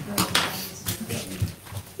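Low, indistinct talk with a few short knocks and rustles close to the microphone.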